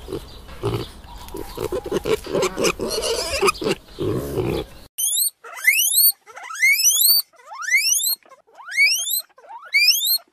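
A pig grunting in short, uneven bursts, then, after a sudden cut about five seconds in, a guinea pig wheeking: a run of about six squeals, each rising steeply in pitch.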